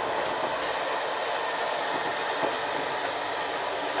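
Steady running noise of a moving passenger train, heard from inside a sleeper compartment: an even rush of wheels on rail and carriage noise.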